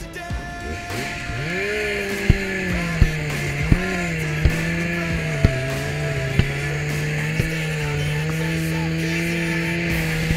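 A power saw's engine revs up about a second and a half in and runs at high speed while cutting a ventilation hole through asphalt roof shingles and decking. Sharp knocks come roughly once a second while it cuts.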